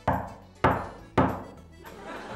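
Three loud knocks on a door, about half a second apart, each ringing out briefly.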